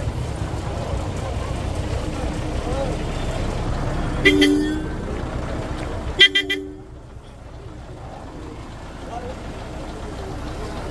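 A vehicle horn gives two short blasts about two seconds apart, heard over crowd chatter and a low rumble.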